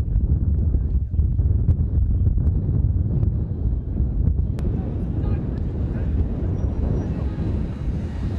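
Wind buffeting the camera's microphone: a loud, uneven low rumble throughout, with a few short clicks.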